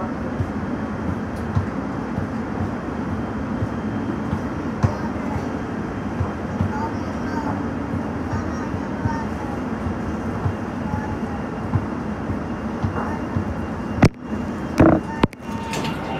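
Light rail train running through an underground station and tunnel, heard from inside the front car: a steady rumble with scattered wheel and track clicks. The sound cuts out briefly twice near the end.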